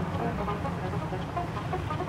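Steady low engine hum with no sudden sounds.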